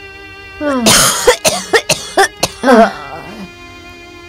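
A sick woman in a coughing fit: a quick run of about seven harsh coughs starting about half a second in, ending with a groaning breath, over soft background music.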